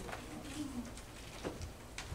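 A man's voice preaching in short phrases, indistinct and hard to make out.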